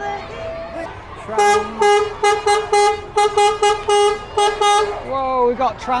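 A horn sounding at one steady pitch: one longer blast, then a rapid run of short toots, about four a second, for around three seconds.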